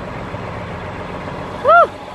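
Steady noise of highway traffic, cars and trucks passing on the interstate. Near the end a brief high voice sounds once, rising and falling in pitch.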